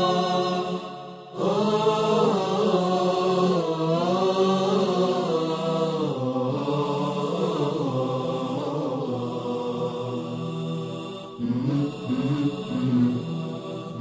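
Arabic nasheed sung without instruments: a voice chanting slow, drawn-out melodic lines over a steady low vocal hum. There is a short break about a second in, and a new phrase starts near the end.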